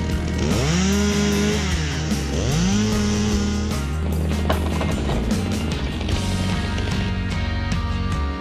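A chainsaw revving up twice in quick succession, each rev held for about a second before dropping back, over background music.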